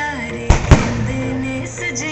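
Two sharp firework bangs a fraction of a second apart, about half a second in, over music with singing that plays throughout.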